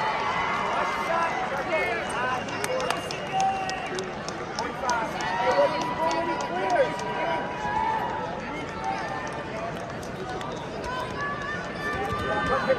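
Arena crowd noise: indistinct chatter and scattered shouts from the stands, with short squeaks of wrestling shoes on the mat as the wrestlers move on their feet. A held call rises over the crowd for a few seconds near the middle.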